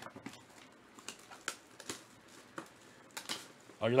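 Hands handling a cardboard trading-card hobby box: a scattering of light, sharp clicks and taps as it is handled and lifted, with a man's brief exclamation near the end.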